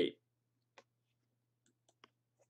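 The tail of a spoken word, then near silence over a faint low steady hum, broken by a few faint clicks: one a little under a second in and two close together near the end.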